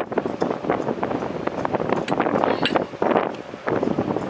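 Gusty wind buffeting the microphone: a rushing noise broken by irregular crackles.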